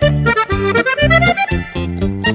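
Accordion-led Italian ballroom polka: short bouncing oom-pah chords about four a second under a melody that climbs steadily in pitch.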